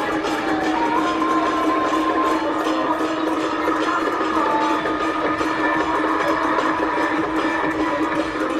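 Traditional temple procession band music: a gliding high melody over a held low note and fast, steady drum and cymbal strokes.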